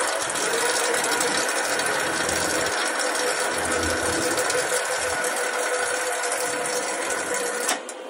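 A machine running steadily with a continuous mechanical rattling hiss, which cuts off abruptly near the end.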